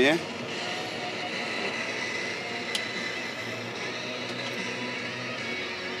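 Steyr 4120 tractor's diesel engine running steadily at idle, with one light click about halfway through.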